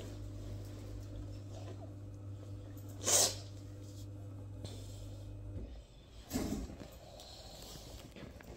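One short, sharp burst of breath through the nose about three seconds in, with a softer second one after six seconds. A steady low electrical hum runs underneath and cuts off shortly before six seconds.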